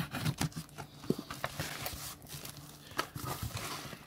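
A knife cutting the packing tape on a cardboard shipping box and the flaps being pulled open: scattered sharp knocks and clicks of handled cardboard, with a stretch of scraping in the middle.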